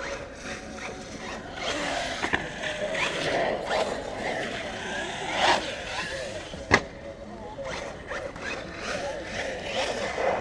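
Arrma Talion 6S brushless RC car driving on concrete, its electric motor whine rising and falling with the throttle over tyre noise. Two sharp knocks, about two and seven seconds in, the second the loudest, with voices in the background.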